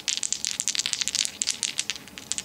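Four wooden dice clicking and rattling against one another as they are shaken in a cupped hand, a quick, uneven run of small clicks.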